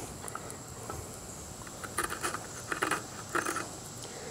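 A dull knife blade scraping shavings off a stick of fatwood: three short scrapes in the second half.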